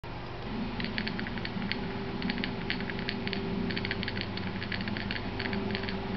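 Quick, sharp clicks in irregular clusters, several to the second, over a steady low hum.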